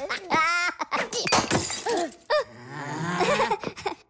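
Minions' high-pitched cartoon gibberish and cries, with a wavering wail near the start, while a glass light bulb shatters on the floor.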